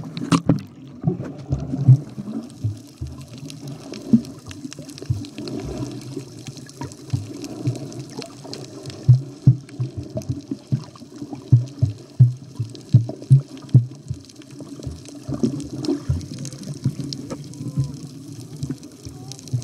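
Water sloshing and bubbling around a camera at or under the surface while snorkelling, with many short, dull low pulses coming irregularly, thickest in the middle.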